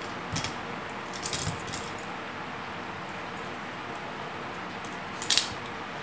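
A few light clicks and rattles of a small aluminium tripod being folded up by hand, the sharpest one near the end, over a steady background hiss.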